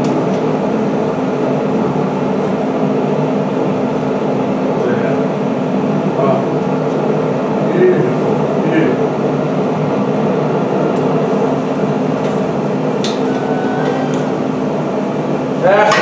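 Scallops sizzling on a hot salt block over the steady hum of a Traeger pellet grill's fan, with a few sharp metal clicks of tongs later on as the scallops are turned.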